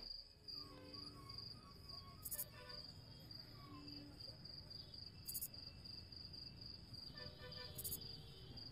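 Crickets chirping faintly in a steady, rapid pulse, with a few soft, sparse music notes under them.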